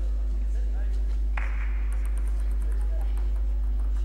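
Hall ambience between points at a table tennis match: a steady low electrical hum with faint voices from the hall, and a brief burst of noise about a second and a half in that fades away.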